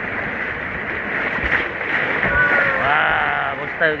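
Steady rush of river water around a raft on a rain-swollen river. There is a drawn-out call with a wavering pitch about two and a half seconds in, and a short exclamation near the end.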